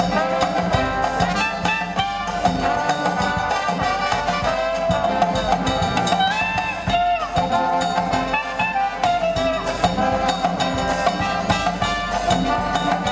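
A New Orleans-style jazz band playing live: trombones, saxophones, trumpet and sousaphone over banjo, snare and bass drum, with a steady drum beat. An instrumental passage with no singing.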